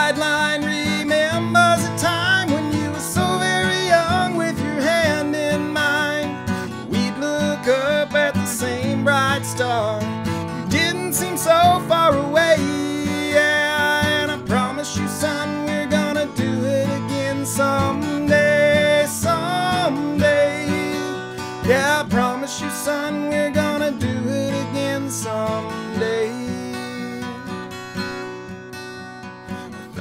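A man singing a slow country song over his own strummed acoustic guitar, getting quieter near the end.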